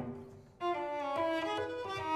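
Solo cello: a sharply attacked note dies away, then about half a second in the cello resumes with sustained bowed notes that step through several pitches.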